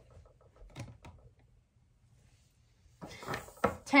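Light knocks and clicks of PVC pipe being handled and set against a wooden table, a few in the first second and more about three seconds in.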